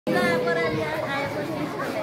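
Many voices chattering at once, overlapping with no single clear speaker.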